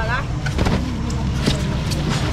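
Busy outdoor market: a steady low rumble under crowd voices, with the tail of a spoken word at the start and two light knocks, under a second in and again about a second and a half in, as styrofoam fish boxes and lids are handled.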